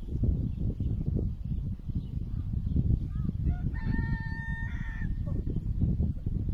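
A rooster crows once, faintly, starting about three and a half seconds in: a few short rising notes, then one long held call of about a second. A steady low rumble runs underneath.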